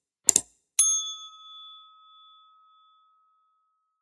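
Subscribe-button animation sound effects: a quick double click, then a single bell ding that rings out and fades over about two seconds.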